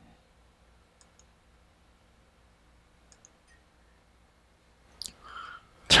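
Computer mouse clicking faintly in a quiet room: two clicks close together about a second in, and two more about three seconds in.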